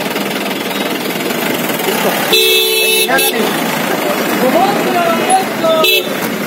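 Street crowd commotion with indistinct voices around a police jeep, broken by a vehicle horn honking for under a second about two seconds in, a short toot just after, and another short toot near the end.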